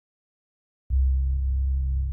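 Silence, then about a second in a deep, low synthesized tone starts abruptly and holds steady: a trailer sound-design drone hit.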